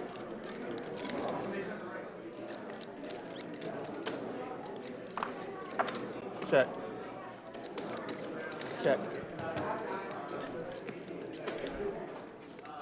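Low background murmur of voices around a poker table in a card room, with a few brief clicks partway through and the word "check" spoken twice in the second half.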